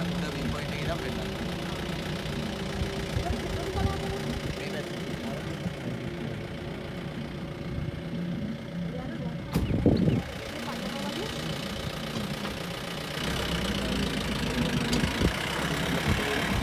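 Safari jeep's engine running at idle, with a thump about ten seconds in. From about thirteen seconds the engine and rumble grow louder as the jeep drives on.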